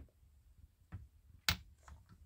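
Four short, faint clicks from hands handling the piston of an Echo 4910 chainsaw's two-stroke engine on its connecting rod; the loudest comes about a second and a half in.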